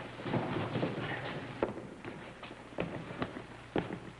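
Scuffling of several people grappling and being shoved along: shuffling footsteps and irregular knocks and thumps, with sharper knocks about a second and a half in and near the end.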